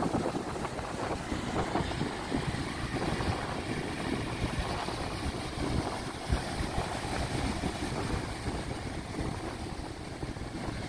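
Wind buffeting the microphone over the steady wash of breaking surf.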